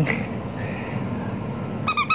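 Yellow rubber duck squeeze toy squeezed by hand: a quick run of high-pitched squeaks begins near the end, after a stretch of low background noise.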